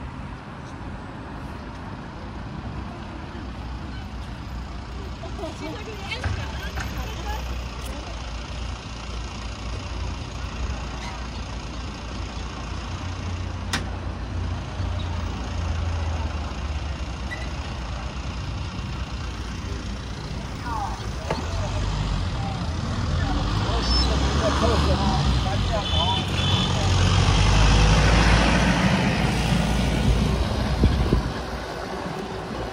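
Highway traffic heard from a moving bicycle: a steady low rumble with passing vehicles. The noise builds over the last several seconds as a louder vehicle passes close.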